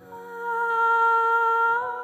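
Female singer holding one long, soft note, close to humming, that starts after a brief pause and bends slightly upward near the end as the next note comes in.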